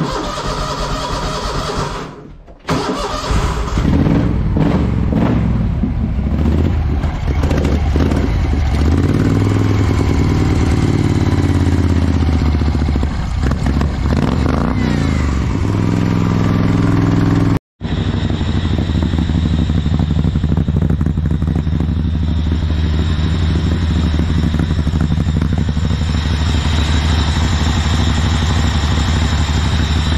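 Wheel Horse B-60 garden tractor's small engine cranking, catching about three seconds in and running, revved up and down several times. After a short break just over halfway it runs on steadily at a fast idle through its aftermarket muffler.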